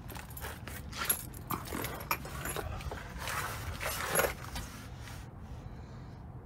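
Handling noise from a phone camera being moved down under a pickup truck: irregular rustles, scuffs and light clicks, dying away near the end.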